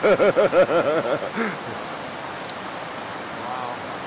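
A man laughing, a quick run of 'ha's lasting about a second, followed by one short further laugh, over the steady rush of a creek running over rocks.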